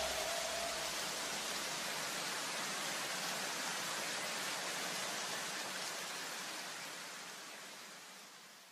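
A steady wash of hiss-like noise at the close of an electronic dance track, with the last notes dying away in the first second. The noise fades out near the end.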